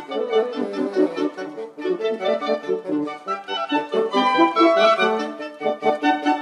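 Chamber wind ensemble playing, with clarinet, bassoon and French horn sounding several moving lines together.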